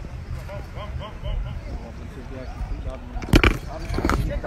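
Faint distant voices on an open football pitch over a steady low rumble of wind on the phone's microphone, then a brief, very loud bump of handling noise near the end as the camera is jostled.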